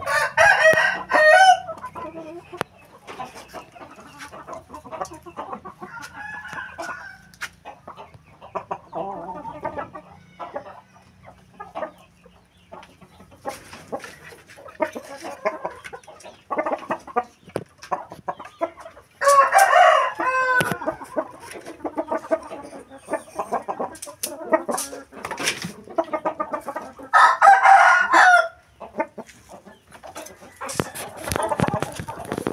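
Roosters crowing three times: once at the start, once about twenty seconds in, and once near the end, each crow lasting a second or two. Between the crows there is softer clucking from the caged chickens and scattered knocks and clicks.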